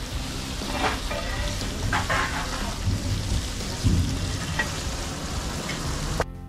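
Red masala sizzling in oil in a large metal pot over a wood fire, with a few short clinks and crackles.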